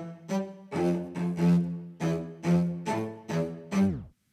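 Staccato string loop of short, repeated bowed notes. Near the end Logic Pro's slow-down fade gives it a tape-stop effect: the pitch drops steeply and the sound dies away.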